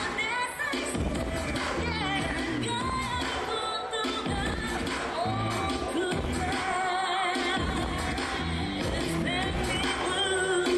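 Pop song with female vocals and a steady beat, played through stage loudspeakers as the backing track for a dance cover.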